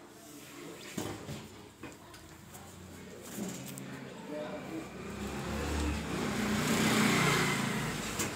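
Indistinct voices in the background, with a rush of noise that builds and is loudest near the end.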